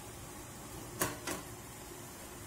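Plastic ring cake mould of batter set down onto a stainless steel perforated steamer tray: two quick knocks about a second in, the first the louder.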